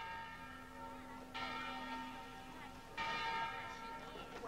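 Church bell tolling slowly. One stroke is still ringing as the sound begins, then two more strike about a second and a half apart, each ringing on.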